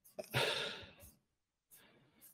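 A man sighing into a close microphone: one breathy exhale that fades out over under a second, followed by faint breathing.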